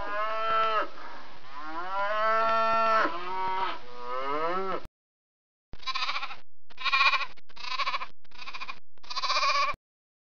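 A cow mooing in three long, drawn-out calls that bend in pitch. After a short silence near the middle, a goat bleats five times in quick, wavering bleats.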